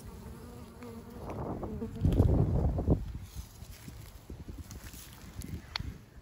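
Honeybees buzzing around an opened hive, a faint steady hum. About two seconds in, a louder rushing noise rises over it for about a second.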